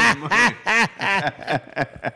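A man laughing hard into a microphone, a run of short pitched 'ha' pulses, about three or four a second, each rising and falling in pitch.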